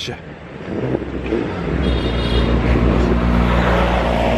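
A motor vehicle's engine running steadily, a deep rumble that grows louder from about a second and a half in as it comes close along the road.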